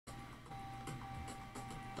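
Faint background music with a few light ticks.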